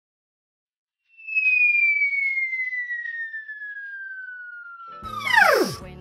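A descending whistle sound effect, like a falling-bomb whistle. It starts about a second in as one clear high tone, glides slowly downward, then plunges steeply in pitch near the end as music begins.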